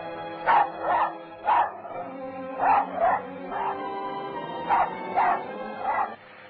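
A dog barking about nine times, in short runs of two or three, over sustained orchestral film-score music.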